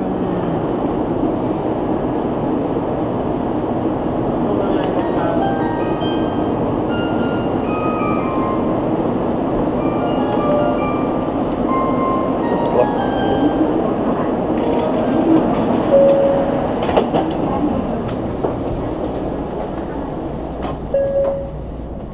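Shinkansen station platform ambience: a steady rumbling hum beside the standing train, with a short electronic chime melody of stepped notes playing from about five to fourteen seconds in.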